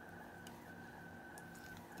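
Quiet room tone with a faint, steady high-pitched whine and two very soft ticks.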